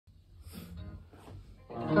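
Electric guitar played: a few faint notes, then a louder chord held near the end.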